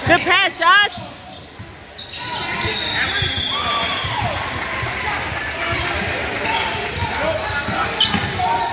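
A basketball being dribbled and bouncing on a hardwood gym floor during a game, with the thumps echoing in the large hall among voices. Near the start come two short, loud sounds with a wavering pitch.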